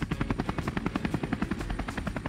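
Helicopter rotor sound effect, a fast and even chopping beat.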